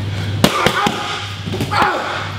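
Boxing gloves smacking focus mitts and a belly pad in a fast combination: one sharp, loud strike about half a second in, then two lighter ones in quick succession, with a short vocal sound near the end.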